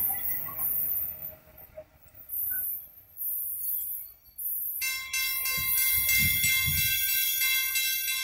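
Faint rumble of a loaded log freight train's wagons rolling away on the rails, fading and dropping out in patches. About five seconds in, music with bell-like tones starts suddenly and becomes the loudest sound.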